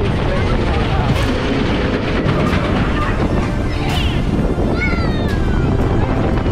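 Wind buffeting the microphone on a moving roller coaster, a heavy rumble throughout, with riders' voices; about five seconds in, one high cry falls in pitch.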